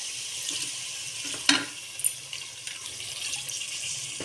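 A glass of water poured from a steel tumbler into a pressure cooker of fried mutton masala, splashing steadily onto the meat. There is a single sharp knock about one and a half seconds in.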